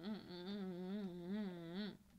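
A person humming with closed lips, a wavering "mm, mm, mm" whose pitch rises and falls about three times a second, stopping just before the end.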